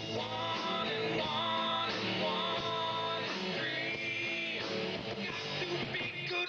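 Live rock band playing, led by guitar, with steady, dense sustained notes throughout.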